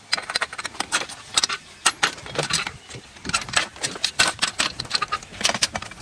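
Metal fittings of a rescue winch hoist clinking and clicking as the crank handle and pin are fitted and the winch is mounted on its mast: a run of sharp, irregularly spaced metallic clicks.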